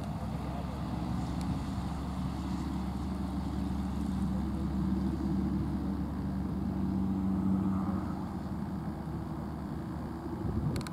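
A motor vehicle's engine running steadily with a low hum, a little louder through the middle and easing off near the end.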